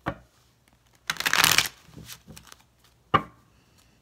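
A deck of tarot cards being shuffled by hand: a quick half-second burst of cards flicking together about a second in, with a single sharp tap of the deck at the start and another near the end.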